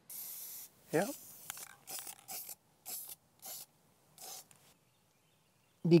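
Aerosol spray can of matte clear top coat hissing as it is sprayed onto a plastic duck decoy: one spray of under a second, then several short bursts.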